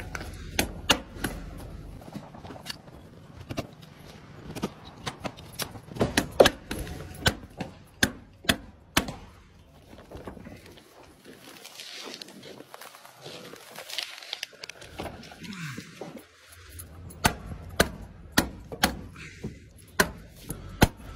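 Hammer tacker being swung to drive staples through roofing membrane into timber, a series of sharp snapping strikes in quick runs, with a pause of several seconds in the middle.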